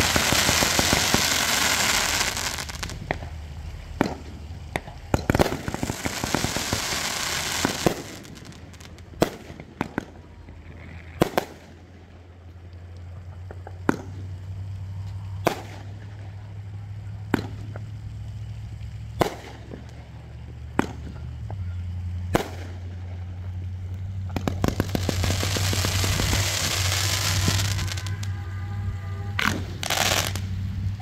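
Consumer fireworks going off: stretches of hissing as sparks shoot up, and a run of sharp bangs from aerial bursts, about one every one and a half to two seconds, with more hissing near the end.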